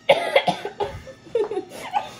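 Young girls coughing hard in a string of sudden bursts, mixed with laughter, while eating extra-spicy instant noodles: the spice is catching in their throats.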